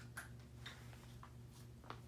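Near silence: room tone with a low steady hum and a few faint, short clicks.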